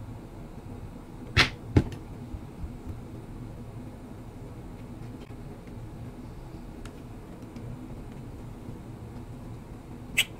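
Small tools and tiny parts handled on a silicone work mat: two sharp clicks about half a second apart a little over a second in, then a few faint ticks over quiet room tone.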